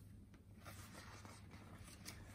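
Faint rustle of a picture book's paper pages being turned over.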